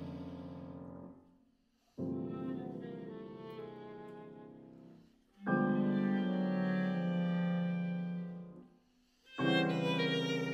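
Chamber trio of violin, bass clarinet and grand piano playing sustained chords. Each chord dies away into a brief silence before the next entry; there are fresh entries about two seconds in, halfway through and near the end.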